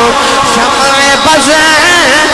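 A man's voice singing a long, wavering melodic line through a microphone and loudspeaker, in the drawn-out chanting style used in a religious sermon.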